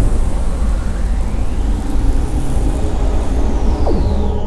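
A loud sound effect: a dense, low rumble with whooshing sweeps in pitch, one rising through the middle and one falling near the end, and a brief downward zap just before the end.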